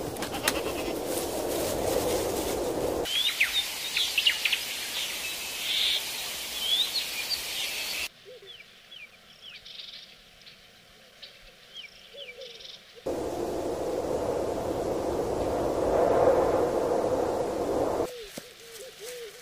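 A run of short outdoor animal clips with sudden cuts between them: a dense, steady mid-pitched sound for about three seconds, then small birds chirping and twittering for about five seconds, then a much quieter stretch with a few faint chirps, and the dense steady sound again near the end.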